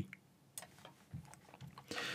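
A few faint, scattered computer mouse clicks, with little else but quiet between them.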